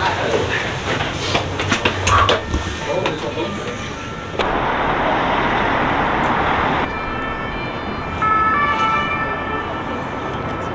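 Footsteps and knocks on stone stairs, then after a cut a steady rush of open-air noise from wind and city traffic, and in the last seconds an emergency-vehicle siren sounding over the city.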